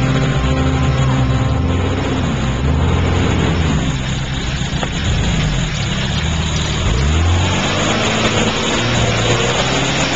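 A motor vehicle's engine running steadily with road noise. A few seconds in, its pitch drops and then climbs again.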